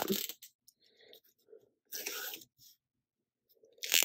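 Quiet, brief handling sounds: light plastic clatter and paper rustle, the clearest about two seconds in, as a clear plastic tape runner is picked up.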